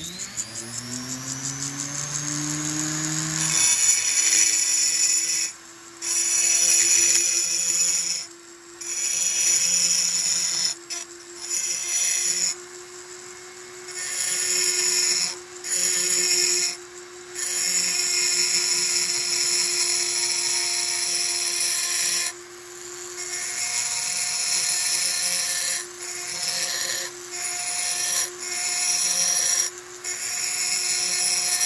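Small handheld rotary die grinder with a burr, spinning up with a rising whine and then running at a steady high pitch. It is carving the aluminium of a Homelite Super XL-130 chainsaw cylinder to open up the transfer ports. A hissing grinding noise starts and stops repeatedly as the burr is pressed to the metal and lifted off.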